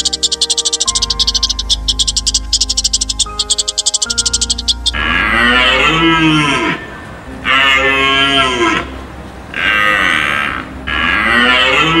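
Rapid clicking chatter, about ten clicks a second, over soft music; about five seconds in it gives way to a series of four long animal calls, each about a second and a half, their pitch arching up and down.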